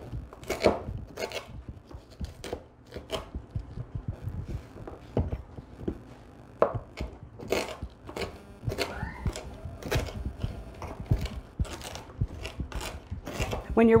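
Mezzaluna rocking knife chopping slowly through hard, freshly harvested marshmallow roots on a wooden cutting board: irregular sharp knocks of the curved blade against the board, a bit over one a second.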